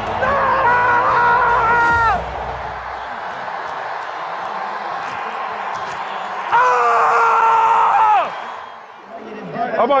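A football player yelling a long, held "Let's go!" for about two seconds, and another long held yell about six and a half seconds in, each falling in pitch as it ends, over stadium crowd noise.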